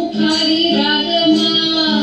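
Indian classical song accompanying a Bharatanatyam dance: a high singing voice gliding between notes over a steady drone.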